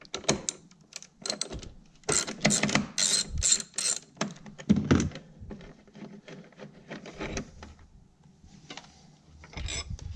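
Socket ratchet on an extension clicking in quick runs as the 13 mm battery hold-down bracket bolt is loosened, with lighter clicks of metal parts being handled in between.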